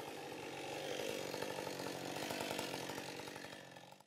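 Gasoline chainsaw idling steadily just after finishing a cut through a log. The sound fades out near the end.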